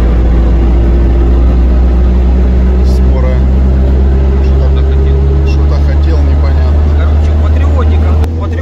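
Steady road noise inside a moving vehicle's cabin at highway speed: a loud, low drone of engine and tyres, with a few humming tones above it that shift slightly in pitch.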